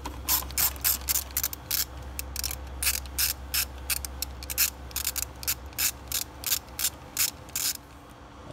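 Hand ratchet with a socket on a long extension clicking in quick, uneven runs while it loosens a worm-drive hose clamp on a plastic air intake pipe.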